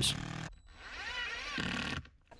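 Cordless impact driver running as it drives screws into a steel piano hinge, its motor whine rising and falling in pitch with the trigger.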